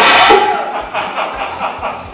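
Hail-test launcher firing an ice ball into a solar panel: one loud blast and impact lasting about half a second, and the panel does not break. Laughter follows.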